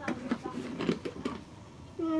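A wooden box being lifted and handled, with a few light knocks and scrapes, under faint mumbled voices.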